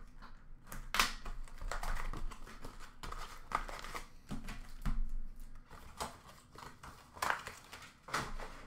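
Cardboard trading-card box being opened and its foil packs taken out and set down: irregular crinkling, scraping and light knocks.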